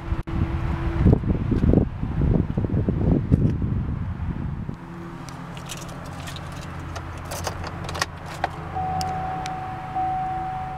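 2008 Chevrolet Silverado engine idling steadily after a remote start. For the first few seconds it is covered by a loud rumbling rustle. After that come light key-jangling clicks, and a steady high tone starts near the end.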